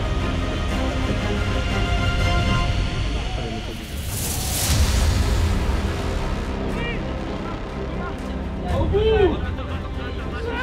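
Background music laid over field sound: a steady low rumble of wind on the microphone, a rushing noise about four seconds in, and short shouts from players near the end.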